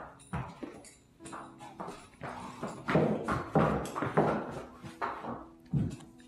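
Horses' hooves stepping on a concrete floor: a string of about a dozen uneven knocking steps, loudest around the middle, as the mare walks into the wash rack beside the foal.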